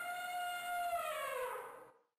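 An elephant trumpeting once: one long call held steady, then sliding down in pitch and fading out near the end.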